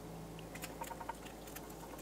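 Faint, scattered crackles and small pops of hot oil frying in a fry pan, with an egg still cooking in it.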